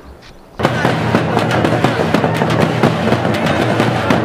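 A string of firecrackers going off: a dense, rapid run of sharp cracks that starts abruptly about half a second in and keeps going, over a steady low hum.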